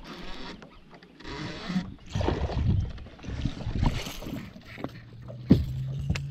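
A hooked bass being reeled in on a baitcasting reel and brought to the boat: fine whirring from the reel at first, then rough splashing and handling noise. A sharp knock comes about five and a half seconds in, and a low steady hum starts just before it.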